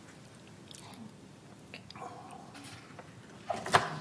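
Quiet room tone broken by small scattered clicks, then a few sharp knocks a little before the end: handling noise picked up by a table microphone.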